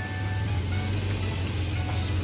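Background music over the low steady hum of a Toyota Land Cruiser Prado 150's petrol engine idling as the SUV creeps slowly in reverse.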